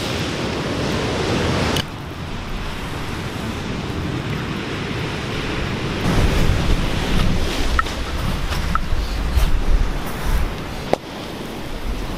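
Steady noise of ocean surf and wind, with heavier wind rumble on the microphone from about six seconds in. A few sharp crackles come from the driftwood campfire.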